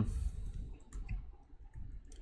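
A few keystrokes on a computer keyboard, scattered single clicks.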